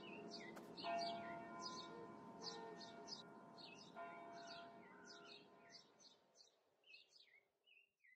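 Faint birds chirping, a few short calls each second, over soft sustained chime-like tones that fade out about six seconds in, leaving a few last chirps.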